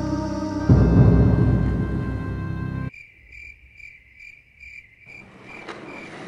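Dramatic music with a heavy hit about a second in cuts off abruptly about halfway through. Cricket chirping follows: a high chirp repeated evenly, about three times a second.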